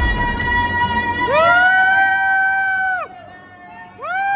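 A loud, high-pitched celebratory whoop held for about two seconds, gliding up at the start and falling away at the end, as dance music fades out beneath it; another whoop begins right at the end.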